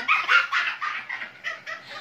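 A woman laughing hard in quick, high-pitched, breathy bursts that die down near the end.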